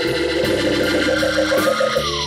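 Live blues band playing, with sustained Hammond organ tones and electric guitar. A held note glides upward near the end.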